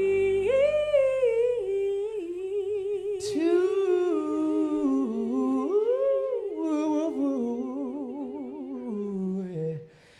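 Two voices humming and singing wordless lines in harmony with vibrato, unaccompanied once the band drops out about two seconds in. Near the end the lower voice slides down and both stop briefly.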